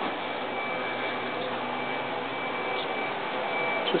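Steady indoor room noise: an even hiss with a thin, steady high whine held through most of it.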